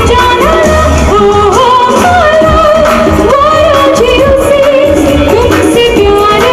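A live pop song played loud through a stage PA: a singer's ornamented melody slides between notes over a band with drums, bass and electric guitar.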